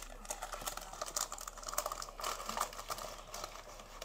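Light, irregular crinkling and small clicks of a thin sheet of foil or parchment paper being handled and pressed by hand.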